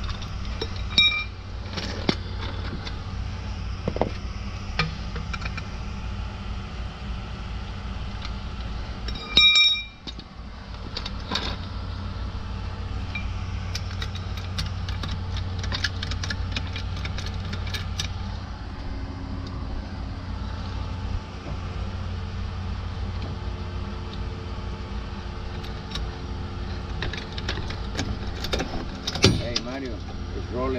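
Hydraulic floor jack being handled and pumped under a trailer tongue: scattered metallic clicks and clanks, with one loud metal clank that rings briefly about nine seconds in. A steady low rumble runs underneath.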